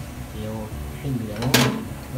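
Minced garlic frying in oil in a pan as a spatula stirs it, with one loud scrape or clatter about one and a half seconds in.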